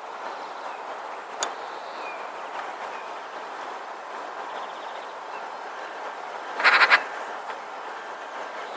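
Eurasian magpie chattering: one short, loud rattle of four or five harsh notes near the end, over steady background noise. A single sharp click comes about a second and a half in.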